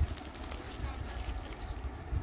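Soft irregular knocks and handling noise as bundles of lace trim are picked up and moved, over a low rumble and a faint murmur of voices.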